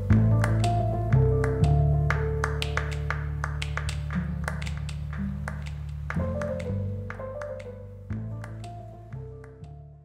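Instrumental score music: held low bass chords that change every few seconds, a sparse higher melody, and light clicks about three times a second, fading out toward the end.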